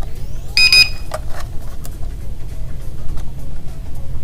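TBS Tango FPV radio transmitter beeping as it powers on: a brief cluster of high electronic beeps about half a second in. Background music plays underneath.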